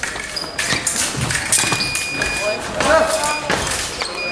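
Foil fencing bout in a large, echoing hall: quick clicks and taps of blades and footwork, voices shouting, and a steady electronic beep from a scoring machine for about a second near the middle.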